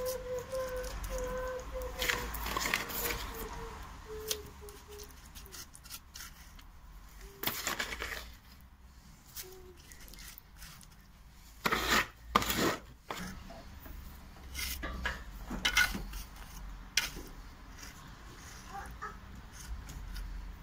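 A mason's trowel spreading and smoothing wet latex-modified cement mortar over a patch of floor, in scattered scraping strokes; the loudest, a pair of sharp scrapes, come about twelve seconds in.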